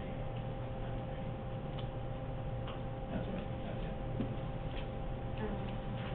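Faint, irregularly spaced light clicks and taps over a steady electrical hum.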